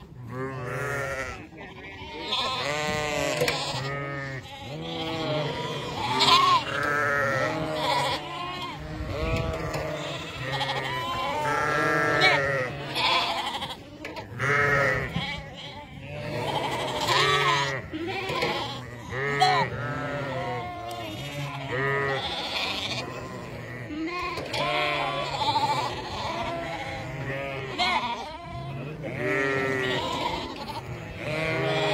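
A large mob of young sheep bleating, many overlapping calls rising and falling without a break.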